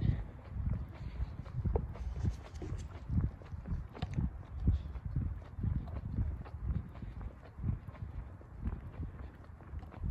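Footsteps of a person walking on an asphalt street, about two steps a second, heard as low thumps.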